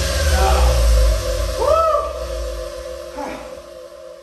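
Dance music fading out at the end of a track. The heavy bass drops away about halfway through, and a short tone rises and falls near the middle.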